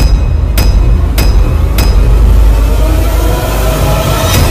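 Loud, distorted, bass-heavy music with sharp hits about every 0.6 seconds. A rising tone builds over it in the second half.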